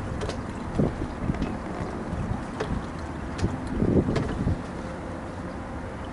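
Wind rumbling on the microphone aboard a small sailboat, a Beneteau First 20, with a faint steady drone underneath. Irregular knocks and thumps come from the boat, the loudest cluster about four seconds in.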